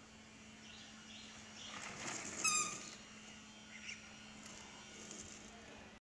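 A baby's single short, high-pitched squeal about two and a half seconds in, over a faint steady hum and low background noise.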